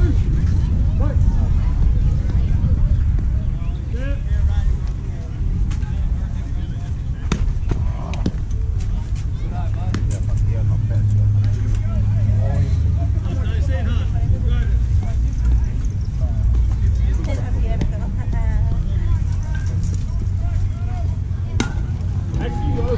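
Wind rumbling on the microphone over faint voices of players and spectators calling out, with a few sharp knocks along the way.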